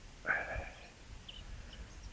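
Faint, scattered bird chirps, with a brief vocal sound from the man about a quarter second in.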